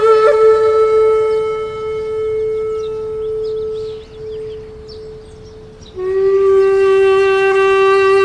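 A wind instrument holding one long, reedy note that fades out about four seconds in, then a new, slightly lower note that comes in loud about six seconds in and is held.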